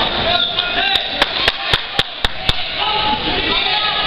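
Seven sharp hand claps, about four a second, close to the microphone, over the chatter of a gymnasium crowd. They are applause for a scoring move.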